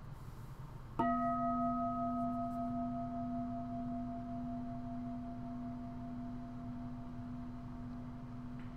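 A bowl-shaped meditation bell struck once with a padded striker about a second in, ringing on: a low hum that holds steady while the higher overtones die away within a few seconds. It is a single invitation of the bell in mindfulness practice.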